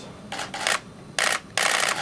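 Camera shutters clicking in quick runs, four short bursts in two seconds, the longest near the end.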